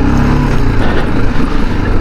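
Single-cylinder engine of a BMW G310GS adventure motorcycle running at low speed on a dirt track, its low engine note easing down slightly about half a second in, over a steady rush of road noise.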